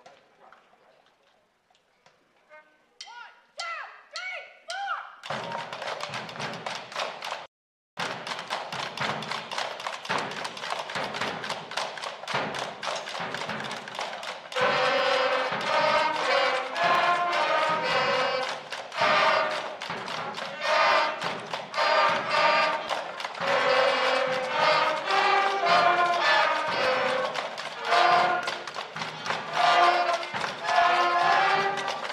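Fifth-grade school concert band of flutes, clarinets and other winds with drums playing a fun band tune. After a quiet start and a few short sliding notes, the drums set a steady beat about five seconds in, and the winds come in louder with the melody about halfway through.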